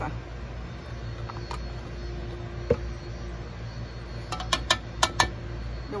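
A metal spoon clinks sharply against a stainless-steel sauté pan, once near the middle and then five or six times in quick succession near the end, over a steady low background hum.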